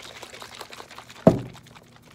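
Water sloshing and splashing inside a capped bottle shaken hard by hand. There is one louder thump a little past halfway, and the sloshing dies away near the end.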